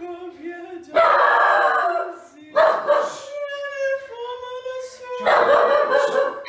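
A dog barking and howling in three loud outbursts, about a second in, around two and a half seconds in and near the end, over a girl's held singing notes.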